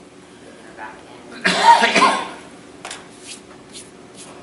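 A person coughs, a loud double cough about halfway through. A few faint, sharp clicks follow near the end.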